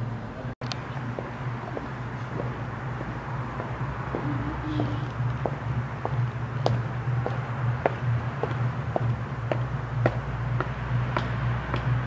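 Footsteps approaching at about two steps a second, growing louder, over a steady low background hum.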